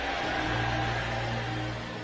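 Soft background music of steady held chords under a hiss of room noise that fades near the end.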